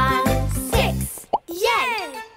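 Bouncy children's song music with a sung line, which breaks off about halfway through for a short cartoon pop sound effect. An excited voice then cries out with a swooping pitch near the end.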